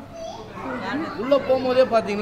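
Background voices of children and other visitors talking and calling out, with rising calls near the start and about a second in.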